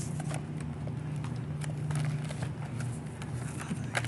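Steady low hum of a grocery store with scattered light taps and clicks.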